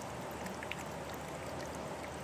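A small trickle of water running over rock into a shallow pool, a steady, even water sound.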